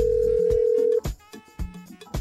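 Electronic telephone ring tone, one steady held pitch, cutting off about a second in, over background music with a light regular beat.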